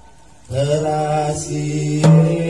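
Half a second of quiet, then a man's voice begins a long held chanting note, the sung accompaniment to a Gayo Guel dance.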